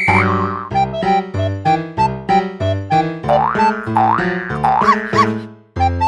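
Background music: a bouncy keyboard tune over a steady bass line. A sliding high tone swoops up and down in pitch several times in the second half. The music drops out briefly just before the end.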